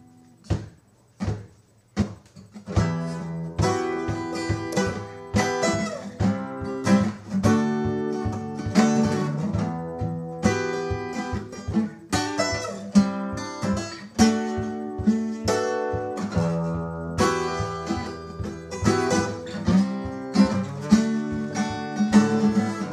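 Guitar played solo as a song intro: a few separate chords struck in the first couple of seconds, then steady rhythmic strumming.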